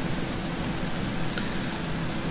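Steady background hiss with a faint low hum, the recording's room and microphone noise, and one faint click about one and a half seconds in.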